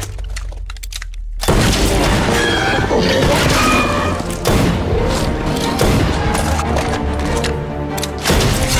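Film soundtrack: a low rumble, then about a second and a half in a sudden loud mix of dramatic score with heavy booms and crashing impacts.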